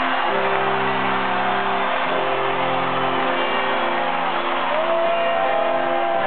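Live rock band playing: electric guitars over held chords that change every second or two, with sliding lead lines above, heard from the audience in an arena.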